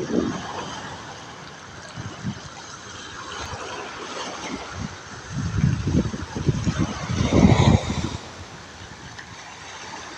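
Small waves washing against a rocky shore, with gusts of wind buffeting the microphone in rough low surges, loudest a little past the middle.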